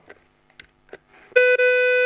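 A single steady electronic tone, one held pitch, starts abruptly in the second half and holds for under a second, after a quiet stretch with a couple of faint clicks.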